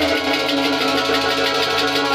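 Harmonium playing: held reed chords with a melody moving over them, with no drumbeat.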